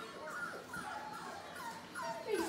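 Four-week-old Labrador puppies giving a run of short, high whines and yips, one call after another.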